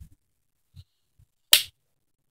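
A single sharp click about a second and a half in, with a couple of faint soft taps before it.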